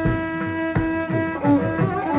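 Carnatic bamboo flute playing raga Reethigowla in a concert performance: a long held note, then a lower phrase with wavering bends about a second and a half in. Regular mridangam strokes accompany it underneath.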